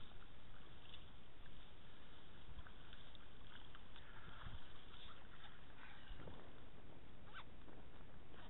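Steady wind rumble on the microphone over small splashes and lapping of river water as a landing net with a salmon in it is handled at the water's edge.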